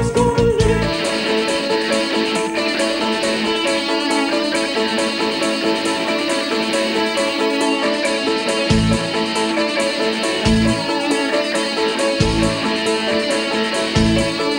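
Live rock band playing, with an electric guitar, a Les Paul-style single-cutaway with humbucker pickups, carrying the sustained notes over a steady ticking beat about four times a second. The low end drops out for most of the passage, and short low bass hits come back about every two seconds near the end.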